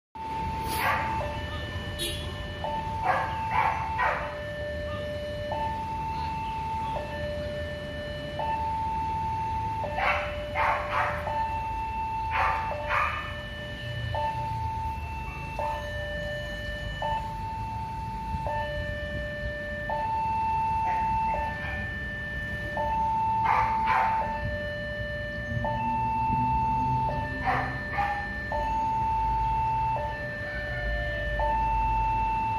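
Railway level-crossing warning alarm sounding, an electronic two-tone signal alternating high and low notes about every one and a half seconds. Under it is the low rumble of traffic waiting at the crossing, and a few brief louder sounds cut in at times.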